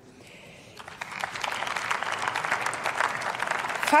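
Applause from a seated parliamentary audience: many people clapping, starting about a second in and carrying on steadily.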